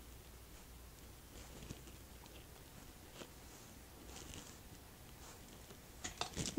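Near silence: room tone, with a few faint soft clicks.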